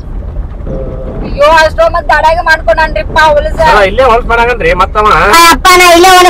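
Speech: a person talking animatedly from about a second and a half in, over a steady low rumble.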